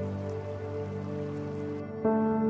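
Calm ambient background music of long held tones over a soft, steady rain-like hiss; the hiss cuts off suddenly near the end as a new, louder musical passage begins.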